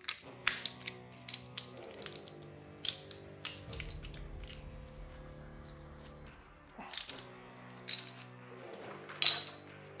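Irregular metallic clicks and clinks of a wrench working a 15 mm nut on a steel speed-sensor bracket held in the hands, as the nut is backed off to readjust the bracket; the sharpest click comes near the end. Quiet background music runs underneath.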